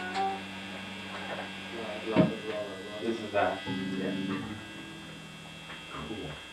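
Steady electrical hum from the rehearsal amplifiers, with a couple of short knocks and a briefly held guitar note in the middle.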